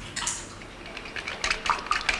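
Painting tools and containers being handled on a table: a string of small, light clicks and clinks, with a brief hiss near the start.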